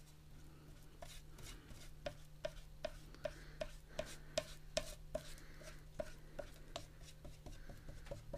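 A flat brush spreading Mod Podge adhesive across a board panel in quick back-and-forth strokes: faint rubbing with a light tick at each stroke, about two to three a second.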